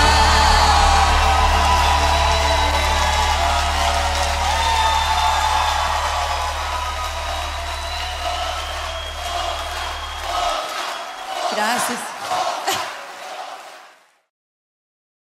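Closing held chord of a pop song, fading slowly; the bass drops out about ten and a half seconds in, leaving a few short bursts of voices before the track stops abruptly.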